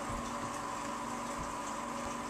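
Home aquarium equipment running steadily: a pump hum with the bubbling of a stream of air bubbles rising through the tank water.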